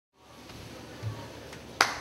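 Faint room tone, then one sharp click near the end.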